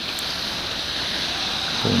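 Steady rushing noise of sea surf.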